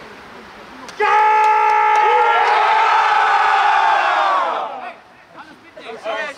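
A football team in a huddle shouting together in one long held cry. Many men's voices come in at once about a second in, hold for about three seconds, then sag slightly in pitch and die away.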